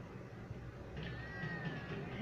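A drawn-out, meow-like cry that starts about halfway through, held on one slightly falling pitch over faint room noise.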